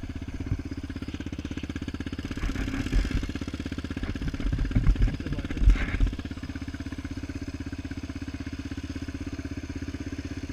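Yamaha Raptor 700R quad's single-cylinder four-stroke engine running at a fairly steady pitch under way. A few loud low thumps come between about two and a half and six seconds in.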